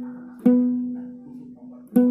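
Second string of a three-string kentrung plucked twice, about a second and a half apart, each note ringing out and fading. It sounds the B at about 246 Hz, now in tune.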